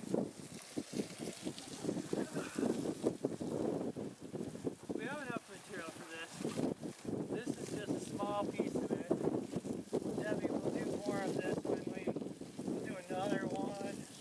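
Several people talking indistinctly over a garden hose spraying water onto a heap of wood chips.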